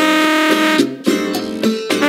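Salsa band music: held horn notes over plucked strings, with a brief dip about halfway through.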